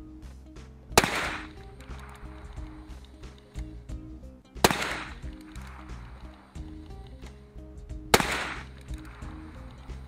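Three shots from a Ruger Single Six revolver firing .22 Magnum rounds, about three and a half seconds apart, each trailing off in a short echo. Background music plays underneath.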